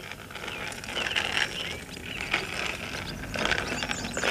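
Small child's bicycle being pedalled, its mechanism creaking and clicking in irregular squeaks.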